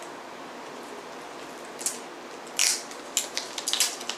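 CD packaging being handled and opened by hand: a plastic crinkling rustle about two and a half seconds in, then a quick run of short clicks and crackles.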